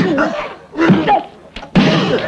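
Men's wordless grunts and shouts during a fistfight, in short loud outbursts at the start, about a second in, and again near the end.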